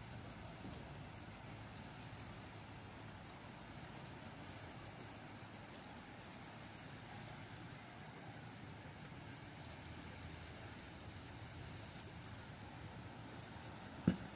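Faint, steady shoreline ambience: a low rumble with an even hiss and no distinct events.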